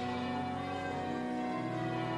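Church music: several sustained notes held together, with the lowest note changing about one and a half seconds in.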